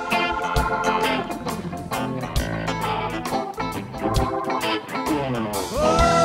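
Rock band playing live: electric guitar and organ over bass and drums. Near the end a held note slides up and then sustains.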